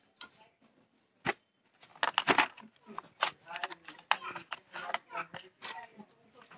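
Full-face motorcycle helmet being pulled on and fastened close to the microphone: a quick, irregular run of clicks, knocks and rubbing noises from the helmet shell and chin strap.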